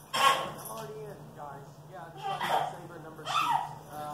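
A baby squealing and a small dog yipping during a tug of war over a plush toy: three short, high-pitched cries, the loudest right at the start and two more in the second half.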